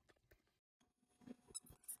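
Near silence, with a few faint, high squeaks near the end.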